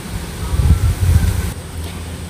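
Kitchen knife slicing through a cucumber on a wooden cutting board, the blade meeting the board in a few dull, low thuds about half a second to a second and a half in.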